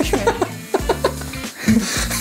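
A man laughing in short bursts over steady background music.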